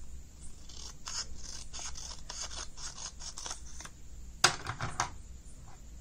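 Scissors cutting paper along a folded line: a run of quick snips, about five a second, for about three seconds. Then, about four and a half seconds in, one louder sharp clack.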